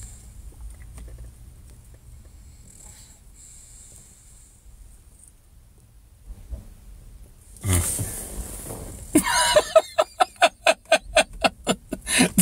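A man laughing in a fast run of short ha-ha pulses, about three or four a second, starting about nine seconds in. Before it there is a long quiet stretch of low room noise, broken near eight seconds by a louder breathy burst.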